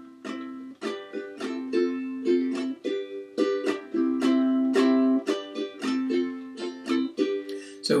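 Ukulele strummed in a repeating pattern, several strums a second, moving through a C, G, F, G chord progression.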